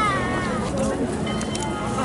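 A young child's high, drawn-out voice sliding down in pitch in the first half-second, over a steady murmur of a crowd.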